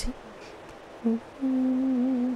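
A woman's voice humming with the mouth closed: a brief note about a second in, then one long steady held note.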